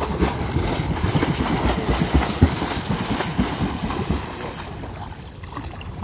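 Legs flutter-kicking in a swimming pool while the swimmer floats face-down: a fast, irregular churning splash of water that weakens over the last second or so as the kicking stops.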